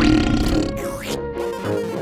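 A cartoon monster's burp sound effect, loud and low, in the first half-second, over steady background music.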